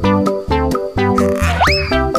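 Bouncy background music with an even, plucked beat. Near the end, a comic sound effect swoops sharply up in pitch.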